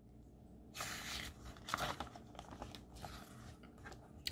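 A paper page of a picture book being turned: a rustle about a second in, followed by lighter crinkles of the paper as it is smoothed down.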